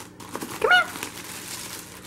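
Tissue paper and cardboard rustling as a box is unpacked by hand, with one short squeak-like call that rises and falls about three-quarters of a second in.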